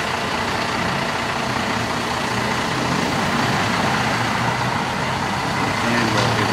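Road traffic noise: a city bus's engine running just ahead, with passing cars, a steady hum and road rush.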